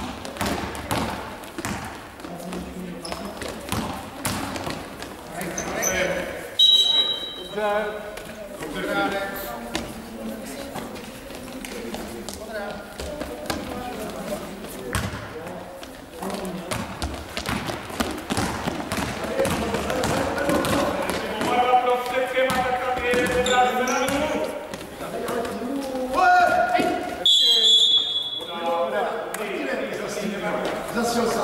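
Basketball game in a large sports hall: the ball bouncing on the court floor and players' voices, with a referee's whistle blown twice, about seven seconds in and again near the end.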